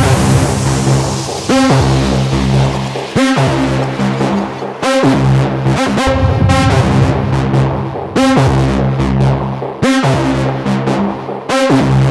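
Hard techno track: layered synthesizer lines with a steady repeating pattern that breaks off sharply about every second and a half, and a falling whoosh sweep in the first couple of seconds.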